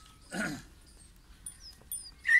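A single short yelp from a puppy, falling in pitch, about half a second in. Faint high bird chirps follow near the end.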